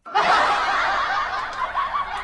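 Laughter, snickering and chuckling, cutting in suddenly from silence just after the start.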